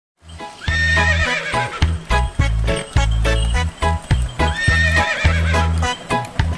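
Upbeat backing music with a heavy, regular bass beat. A horse whinny sounds about a second in and again near five seconds, the same shape both times.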